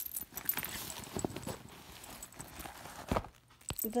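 Handling noise from a handbag's contents: rustling with scattered light metal clicks as a keyring is set down and a shoulder strap with metal clasps is pulled out, with a couple of sharper clicks near the end.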